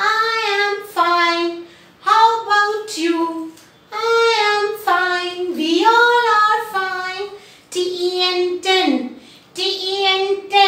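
A woman singing a children's number-name rhyme alone, without accompaniment, in short phrases with brief pauses between them.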